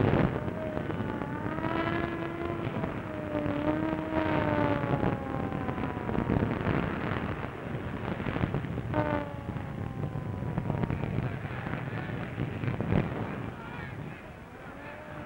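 Sirens wailing: long pitched tones that rise about a second and a half in, hold, then slowly fall, and wind up again about 9 s in with a long falling glide. Underneath is a rough, noisy din with a few sharp cracks.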